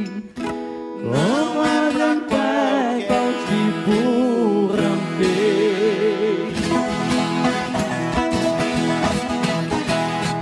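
Live acoustic sertanejo music: a ten-string viola caipira and guitar plucked and strummed, with a voice carrying a wavering melody line through the first half.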